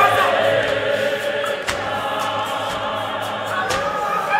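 Church choir of many voices singing a hymn together, with two short sharp knocks about two seconds apart.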